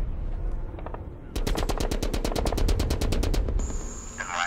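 A rapid, evenly spaced run of sharp cracks, about ten a second, starting about a second and a half in and lasting a little over two seconds.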